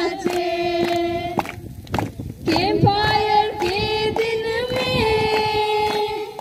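A group of young voices singing a welcome song together in long held notes, with a short break about two seconds in.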